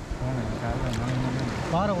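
A man's voice talking over waves washing across wet sand at the water's edge.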